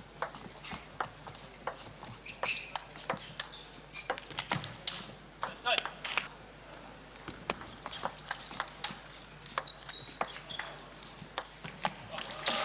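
Table tennis ball being struck back and forth in fast rallies: a run of sharp, irregular clicks of the celluloid ball off the rubber bats and the tabletop, ringing slightly in a large hall.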